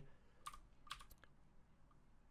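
Near silence broken by a few faint clicks, about half a second and about a second in, from controls being worked at a computer desk.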